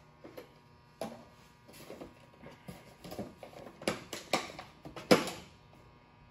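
Handling noise: irregular rustles and knocks, the loudest about five seconds in, over a faint steady hum.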